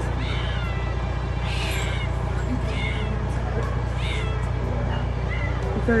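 A cat meowing over and over, several short, high, bending cries about a second apart, over a steady low hum.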